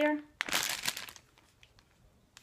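Plastic Laffy Taffy candy bag crinkling as it is handled and turned over, a brief burst of crinkles lasting under a second.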